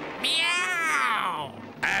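A cartoon cat's yowl: one long meow with a wavering pitch that falls steadily, fading out about a second and a half in.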